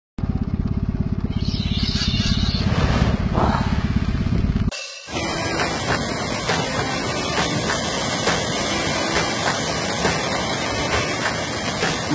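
A low, rapidly pulsing rumble that cuts off suddenly about five seconds in. Then steady surf noise with many short splashes as a flock of pelicans dives into the sea.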